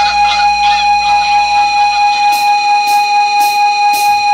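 Opening of a hardcore punk demo track: a loud held tone with a slight pulse, with a few goose honks in the first second. From about halfway, four evenly spaced cymbal taps about half a second apart count the band in.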